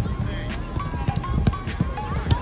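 Soccer balls being kicked on an artificial-turf pitch: sharp thuds at irregular intervals, the loudest about one and a half seconds in.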